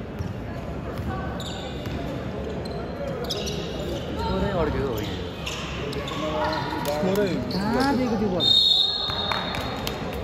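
A basketball being dribbled on an indoor court, the bounces echoing in a large gym hall, under the calls and shouts of players and spectators. The voices grow louder in the second half, and a short high-pitched tone sounds about a second before the end.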